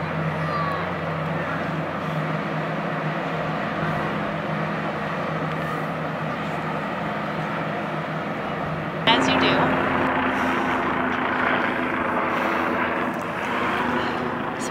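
Tug-barge's engines running with a steady low drone over a haze of wind and water. About nine seconds in, the sound cuts abruptly to a louder steady hum with a higher tone.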